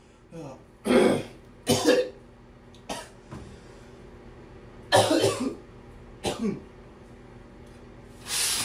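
A man coughing in short fits: a light cough near the start, two hard coughs about one and two seconds in, a smaller one near three seconds, then two more coughs around five seconds and one around six and a half. The coughing comes from a throat bug that will not let up.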